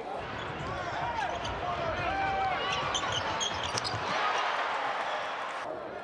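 Crowd noise in a basketball arena, with distant voices and a basketball bouncing on the hardwood court during the first few seconds.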